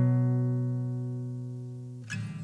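A strummed acoustic guitar chord ringing out and fading steadily.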